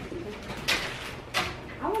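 Two sharp knocks about two-thirds of a second apart, from things being handled in a kitchen cupboard or on the counter.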